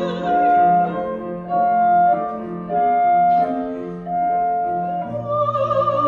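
Soprano, clarinet and piano performing a German art-song lullaby. Gently rocking phrases of repeated held notes are heard, and the soprano's vibrato voice swells near the end.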